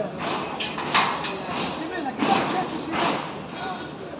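Men's voices talking and calling out, with a sharp knock about a second in.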